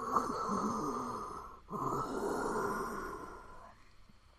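Two long, raspy, breath-like swells one after the other, each lasting about two seconds, the second fading away near the end: an eerie breathing sound for what the trapped character hears in the dark.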